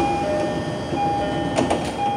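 Train door-closing chime sounding inside the car: a two-tone ding-dong, high then low, repeating about once a second, which signals that the doors are about to close. A brief rattle comes about one and a half seconds in.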